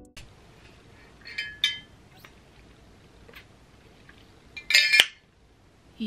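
Glass jar clinking lightly: two ringing clinks about a second and a half in, a few faint ticks, then a louder cluster of clinks and a knock near the end.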